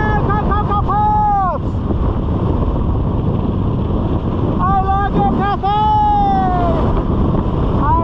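Steady wind rushing over the helmet camera's microphone during a parachute canopy flight, with a man's high, sliding vocal whoops: a run of short notes ending in a long falling one in the first second and a half, and another run with a long falling call around the middle.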